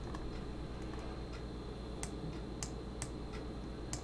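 A few sharp computer mouse clicks, about four in the last two seconds, over a steady low hum of background noise.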